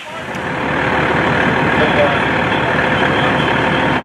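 Diesel fire apparatus running steadily at the scene: a loud, even engine noise with a constant hum underneath, building up over the first half second.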